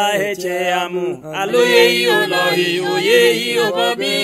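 Several voices singing a gospel song together, with little instrumental backing heard.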